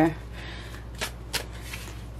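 Tarot cards handled: a card drawn off the deck and laid face up on a wooden table, with two crisp card snaps about a second in.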